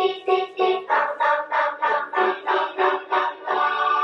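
Children singing a song in unison, in short even syllables about three a second, going into held notes near the end.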